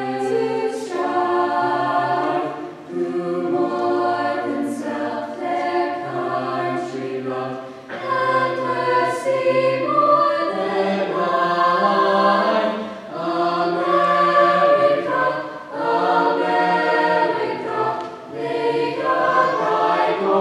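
Mixed-voice school choir singing a piece in harmony, low voices holding notes beneath the upper parts, in phrases with short breaks between them.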